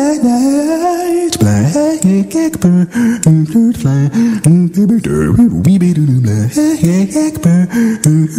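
A lone male voice singing wordlessly a cappella, with no instruments. It holds a sliding note for about a second, then leaps rapidly back and forth between low bass notes and higher melody notes, punctuated by sharp percussive clicks.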